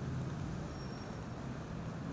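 Steady city street traffic noise, a low, even hum of passing vehicles.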